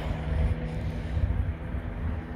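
Steady hum of a nearby vehicle engine over an uneven low rumble of wind on a phone microphone.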